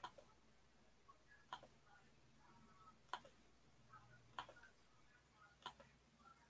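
Near silence broken by faint, sharp computer mouse clicks, about one every second and a half.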